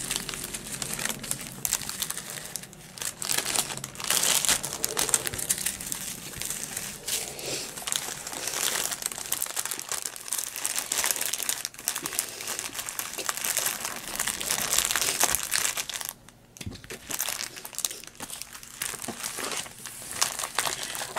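Clear plastic zip bags of diamond-painting drills crinkling as they are handled and gathered up off a film-covered canvas, with a brief lull about three quarters of the way through.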